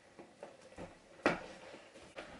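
Faint small knocks and scrapes of an advent calendar compartment being worked at by hand because it is stuck, with one sharper click about a second and a quarter in.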